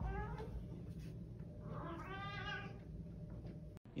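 Domestic cat meowing twice: a short call at the start and a longer, drawn-out one about two seconds in.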